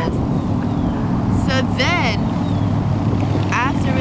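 A steady low mechanical hum, like a motor or engine running, with wind rustling on the microphone. A brief voice sound comes about two seconds in.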